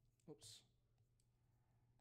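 Near silence with a low steady electrical hum and a few faint clicks; a single spoken 'oops' comes about a quarter second in.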